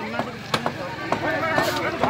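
Hand tools striking rubble twice, sharp knocks about half a second and a second in, under several men's voices talking over one another.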